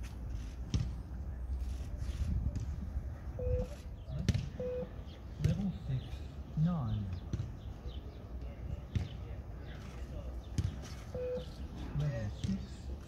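Short electronic beeps of a Course Navette shuttle-run recording, three in all, the last two about six and a half seconds apart. Under them is open-air pitch ambience with distant voices and occasional sharp thuds.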